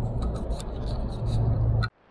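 Steady low drone of a Ford F-250 pickup with the 6.7 Powerstroke V8 turbodiesel cruising at highway speed, heard inside the cab, with engine and road noise together and a few faint ticks. It cuts off suddenly just before the end.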